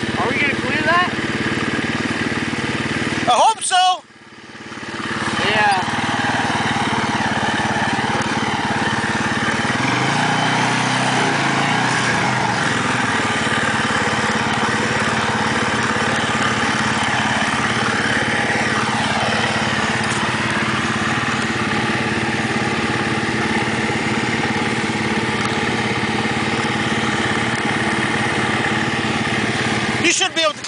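Sport quad (ATV) engine running at a steady speed, with a brief dropout about four seconds in.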